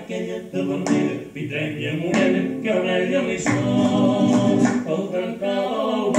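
A man singing a folk song, accompanied by a strummed classical guitar.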